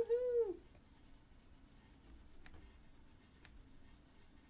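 A single short, high vocal cry at the very start, rising and then falling in pitch over about half a second, followed by faint room tone with a few soft clicks.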